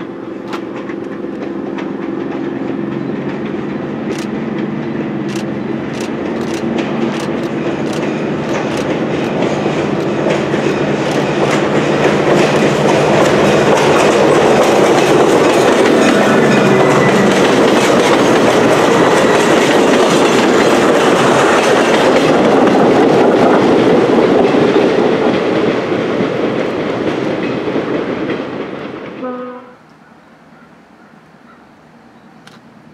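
Diesel passenger train of stainless-steel cars approaching and passing close by: a steady engine drone and clicks of wheels over rail joints build into a loud rush of wheels on rail as the cars go by. It fades, then cuts off suddenly near the end.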